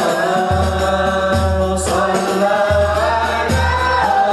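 A boy's solo voice singing a qasidah (Islamic devotional song) through a microphone, holding long notes with ornamented runs that bend up and down in pitch. A low sustained bass tone sounds underneath in stretches.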